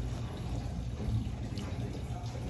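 Quiet dining-room background: a low steady hum with a faint even noise above it, and no distinct event.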